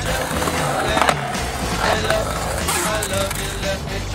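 Skateboard wheels rolling on a concrete bowl, with a sharp knock of the board about a second in, under background music.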